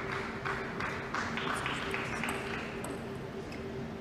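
Scattered clapping from a few spectators after a point, a quick patter of claps that fades out about halfway through.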